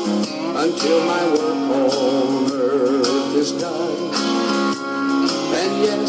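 A Southern gospel song with a singing voice over guitar and band accompaniment, the voice held on wavering notes with vibrato.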